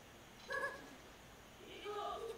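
A short, high-pitched vocal sound about half a second in, and a fainter one near the end.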